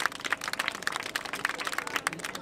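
Small audience applauding, many hand claps overlapping densely and unevenly.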